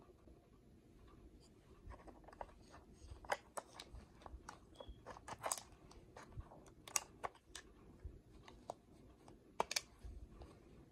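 Faint, scattered clicks and taps of a small plastic digital camera being handled as its battery and memory-card door is opened, with a few sharper clicks in the second half.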